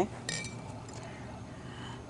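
One short clink just after the start: a hard Christmas decoration knocking against another hard surface as it is handled. Faint room noise follows.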